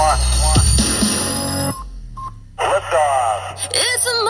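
Radio station imaging: music with singing and a high rising sweep, a brief drop-out about two seconds in, then sliding vocal tones lead into a sung station jingle.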